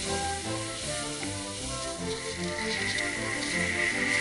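Skis hissing as they slide over snow, getting louder about halfway through as the skier speeds up, under background music.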